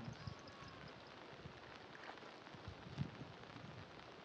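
Quiet outdoor ambience with faint rustling and a few soft knocks as a plastic sack of fish is handled, and one sharper tap about three seconds in.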